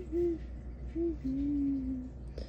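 A woman humming a tune with her mouth closed: two short notes, then a longer held note in the second half.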